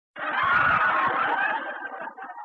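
A person's voice screaming loudly, trailing off near the end.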